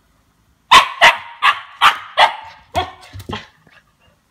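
Two-month-old Siberian husky puppy barking: a quick run of about seven sharp barks, two or three a second.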